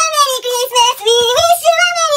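A song with a high-pitched sung vocal moving quickly from note to note, playing as backing music.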